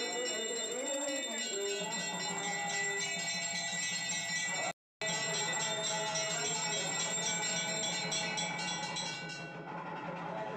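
Temple puja bells ringing fast and continuously, a dense shimmer of high ringing tones over a steady low drone, with a chanting voice in the first two seconds. The sound drops out completely for a moment just before five seconds in.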